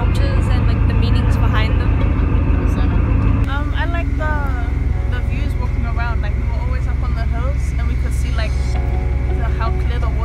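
Passenger ferry's engines giving a steady low drone, which drops in level and shifts its pattern about three and a half seconds in, under voices talking.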